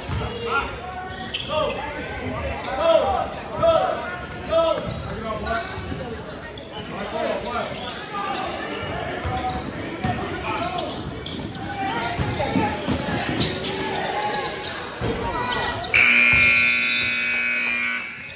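Basketball bouncing on a hardwood gym floor amid indistinct voices of players and spectators, echoing in a large gym. About two seconds before the end, a steady, loud scoreboard buzzer sounds and runs on. It is the loudest sound here and typical of the horn that ends a period or the game.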